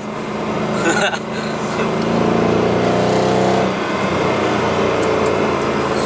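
Car engine heard from inside the cabin while driving, accelerating: its note climbs from about two seconds in, drops suddenly just before the four-second mark as the gearbox shifts up, then runs on steadily.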